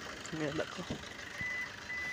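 Two short, high, steady electronic beeps about half a second apart, of the kind a car's warning beeper gives.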